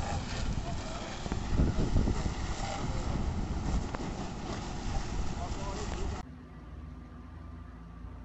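A burning Mercedes car fire, heard on a phone microphone as a loud, steady noisy rumble with wind buffeting the microphone and faint voices. About six seconds in the sound drops abruptly to a quieter hum.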